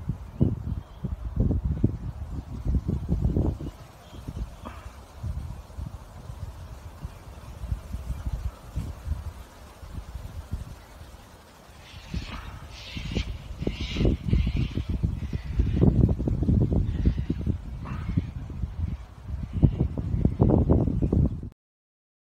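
Wind buffeting a phone microphone outdoors, a rumble that rises and falls in gusts. A short run of bird calls comes in about halfway through. The sound cuts off suddenly near the end.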